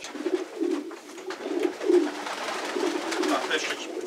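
Racing (homing) pigeons cooing in a loft, a run of repeated low, rolling coos overlapping one another.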